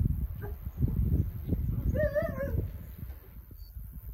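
A dog gives one short, wavering whine about two seconds in, over a steady low rumble.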